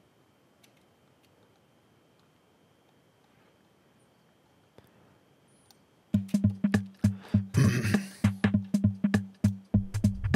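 Near silence with a few faint clicks for about six seconds, then an electronic drum-machine beat from Pro Tools' Boom plugin starts: fast repeated kick and snare hits with a low, pitched thump.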